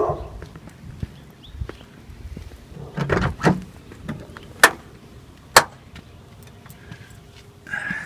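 Car door of a 2001 Suzuki Swift being opened and handled: a rustling clunk, then two sharp clicks about a second apart.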